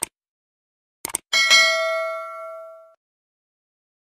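Subscribe-button animation sound effect: a mouse click, a quick double click about a second in, then a notification bell ding that rings out and fades over about a second and a half.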